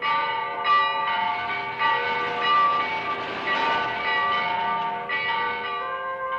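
Bells ringing: several overlapping strikes, with the tones of each ringing on into the next.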